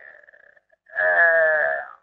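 A man's long drawn-out hesitation sound, a held "aah" at a steady pitch, starting about a second in and lasting about a second.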